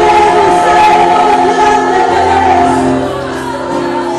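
Church worship music: many voices singing over long held chords, with a slight dip in loudness near the end.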